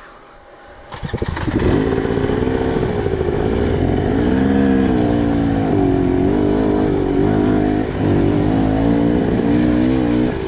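KTM 300 two-stroke dirt bike engines on slow, technical trail riding. After a quiet moment, the sound comes in loudly about a second in, and the pitch then rises and falls continually as the throttle is worked.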